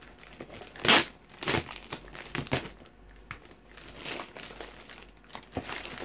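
Packing paper being crumpled and rustled as it is handled in a box, in irregular bursts, the loudest about a second in.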